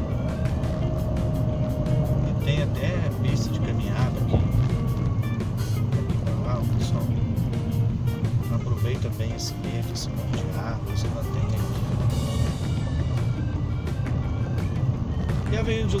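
Steady engine and road rumble of a car moving slowly in city traffic, with music and voices playing over it.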